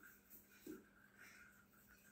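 Near silence: room tone, with one faint short sound about two-thirds of a second in.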